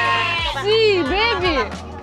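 Goats bleating, a few wavering, arching calls in close succession.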